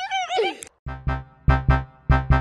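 A high, wavering animal call in the first half-second or so, then from about a second in a repeating keyboard-and-bass music figure with strong, regular beats.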